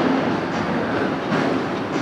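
A steady, even rush of background noise with no speech, holding level throughout.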